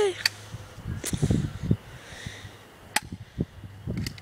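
Airsoft pistol firing three sharp shots: one near the start, one about a second in and the loudest about three seconds in. A low rumble runs between the first two shots.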